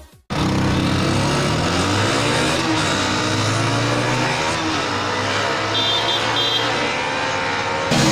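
Motorcycle engines running and revving, their pitch rising and falling, from about a third of a second in.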